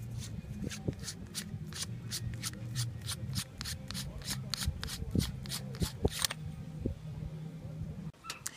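The threaded 6061 aluminium end cap of a OneTigris waterproof capsule being twisted open by hand: a quick run of short scratchy clicks, about three or four a second, that stops about six seconds in.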